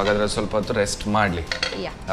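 Plates and cutlery clinking as dishes are handled and set down on a counter, with a voice speaking over it.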